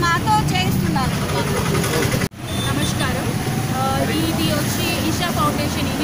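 People speaking over crowd chatter, with a sudden break in the sound about two seconds in.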